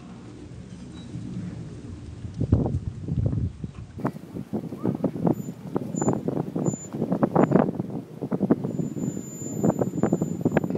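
Toyota Land Cruiser 80-series SUV crawling over a loose dirt mound: a steady low engine hum, then from about two and a half seconds in an irregular, crackling rumble from the tyres working over and breaking up the dirt, growing louder.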